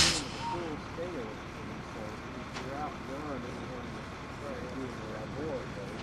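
A heavy truck's engine running steadily as it slowly pulls a lowboy trailer loaded with a crawler loader across a bridge span. Faint voices of people talking can be heard under it.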